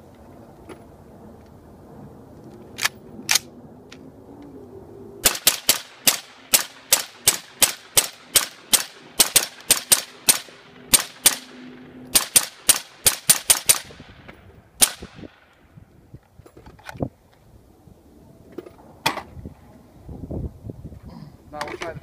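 Suppressed LWRC M6A2 rifle fired rapidly in semi-automatic, about two dozen shots roughly three a second with a brief break partway, then one last shot; its adjustable gas block is set for suppressed fire. Two sharp cracks come a few seconds before the string.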